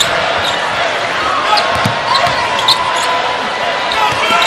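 Arena crowd murmuring steadily, with a basketball being dribbled on the hardwood court.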